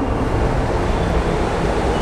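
Steady rushing background noise with no clear pitch or rhythm, spread evenly across low and high tones and nearly as loud as the nearby speech.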